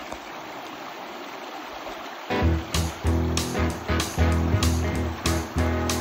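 Shallow river water running over gravel, a steady rush, then background music with a deep bass line and a steady beat comes in a little over two seconds in and takes over.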